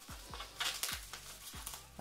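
Plastic bubble wrap crinkling and rustling in irregular small crackles as hands handle it and pull it loose.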